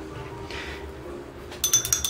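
Paintbrush rattling against the inside of a glass jar of brush-rinse water: a quick run of glass clinks near the end.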